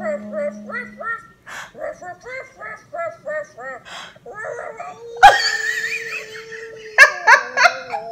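A woman laughing in a run of short bursts that rise and fall in pitch, about two to three a second. There is a sudden loud burst about five seconds in, and three sharp loud ones near the end.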